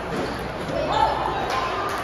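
Sharp clicks of a table tennis ball bouncing on the table and off a paddle, two of them close together about a second and a half in, over voices in the background.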